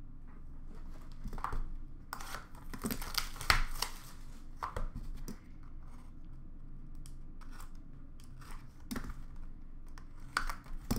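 Packaging of a trading-card box being torn open and crinkled by hand: irregular crackling and tearing of plastic wrap and cardboard, in bursts through the first half and again near the end.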